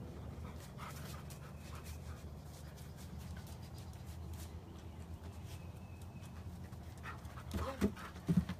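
A dog panting steadily, with a few faint clicks.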